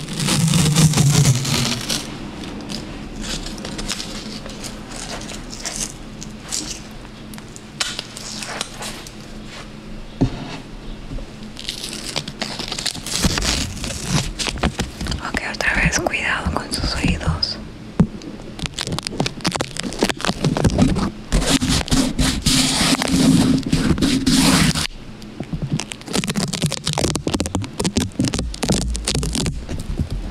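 Masking tape being peeled from its roll and pressed and rubbed on a foam-covered microphone, close up. It makes loud, irregular crackling and tearing, with dense bursts at the start and again from about 21 to 25 seconds in.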